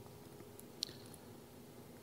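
Faint room tone with a low steady hum, broken by one short, sharp click a little under a second in.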